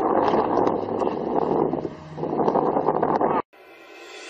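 An engine running low and steady under rough rustling and clattering, with a dip about two seconds in. It cuts off abruptly about three and a half seconds in.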